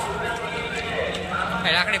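Background song: a voice singing a short repeated phrase over held instrumental notes, with a higher, wavering vocal line coming in near the end.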